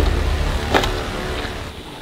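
A deep, low rumble that slowly fades away, with a couple of faint clicks over it: an intro sound effect under the channel's logo card.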